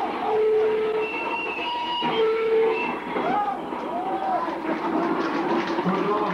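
Loud crowd noise from a packed mosh pit: overlapping shouts, with a few long held cries and a high whistle from about a second in, and rising-and-falling calls near the middle.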